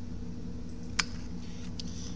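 Multimeter probe tip clicking once against the dashboard circuit board about halfway through, with a couple of fainter ticks after it, over a steady low hum.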